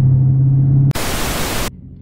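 The Dodge Charger Scat Pack's 392 HEMI V8 drones steadily inside the cabin. About a second in, a loud burst of static-like hiss takes over and cuts off abruptly after under a second.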